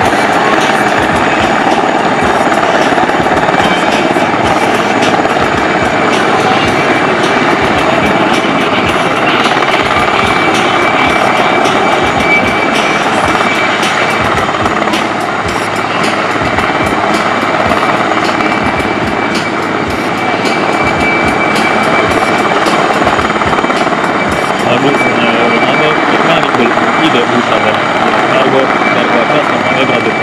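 IAR 330 Puma helicopter's rotors and twin Turbomeca Turmo turboshaft engines running in hover and slow flight: steady rotor chop under an even high turbine whine, a little quieter about halfway through.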